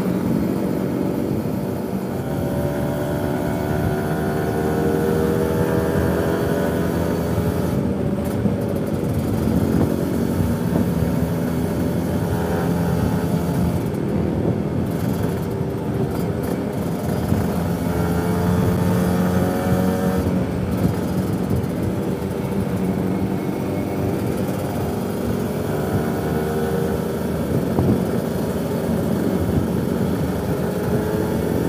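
Kawasaki Ninja 150 RR two-stroke single-cylinder engine running at road speed, its pitch climbing and dropping again and again as the rider opens the throttle and shifts gears, over a steady rush of wind and road noise.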